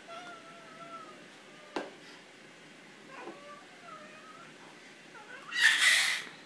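A baby vocalising: soft, high-pitched whines, a single knock of a plastic bowl or toy on the high-chair tray a little before two seconds in, then a loud squeal near the end.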